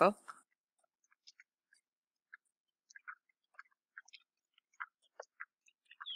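Near silence with a few faint, scattered small clicks.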